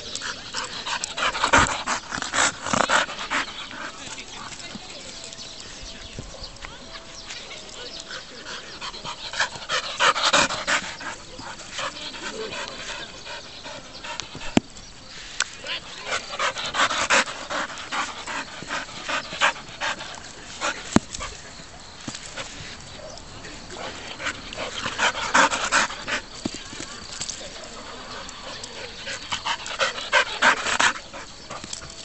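Young golden retriever panting hard close to the microphone, in several bursts of a couple of seconds each as it comes back with the ball, with quieter stretches between them and a couple of sharp clicks.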